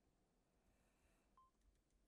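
Near silence: room tone with a few very faint clicks and one very short, faint beep about one and a half seconds in.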